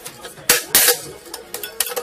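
Sharp metallic clicks and clanks of a hand hole punch on the rim of a galvanized tin tub and the tin being handled, loudest about half a second in.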